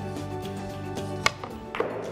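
Background music with held tones. A little over a second in, one sharp click: a cue striking a Russian pyramid billiard ball. About half a second later comes a short, softer noise.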